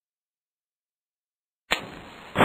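Silence, then near the end a match struck in one sharp scrape, flaring into a steady hiss as it burns.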